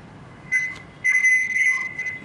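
A high-pitched electronic whistle, one steady tone that cuts in about half a second in and then sounds in broken, on-and-off stretches, mostly in the second half.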